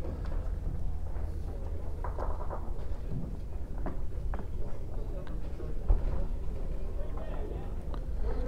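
Indoor bowls hall ambience: a steady low hum with faint, distant chatter of voices and a few light knocks.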